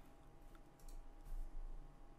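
A faint computer mouse click selecting an item, over a low steady electrical hum.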